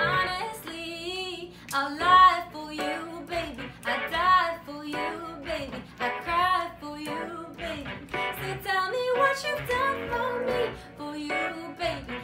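A pop song performed live: a woman singing in bending phrases over keyboard accompaniment.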